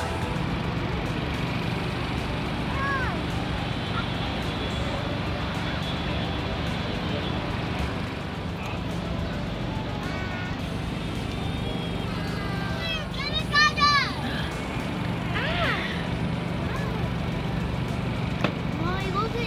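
Steady outdoor background noise with a low hum, broken by a few short high-pitched voice calls. The loudest is a rising-and-falling call about two-thirds of the way through.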